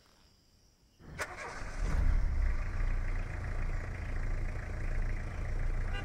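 After a second of near silence, a click about a second in and then a bus engine starting, swelling for a moment and settling into a steady low running.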